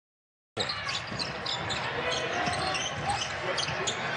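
Silence for about half a second, then a basketball being dribbled on a hardwood court, with the background noise of the game.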